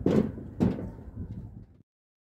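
Two heavy thumps about half a second apart over a low, uneven rumble, then the sound cuts off abruptly near the end.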